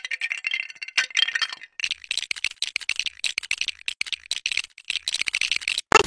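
A dropped Samsung Galaxy S4 phone clattering on a tile floor. There is a burst of sharp clicks about a second in, then a fast, nearly continuous rattle of small plastic-and-glass clicks that cuts off suddenly near the end.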